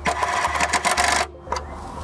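Chicago Pneumatic CP8818 12 V cordless impact driver hammering on a screw in rapid impacts for just over a second, then stopping; a fainter steady hiss follows.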